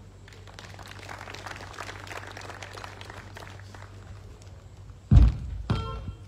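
Two heavy, deep thumps about half a second apart near the end, over a low steady hum.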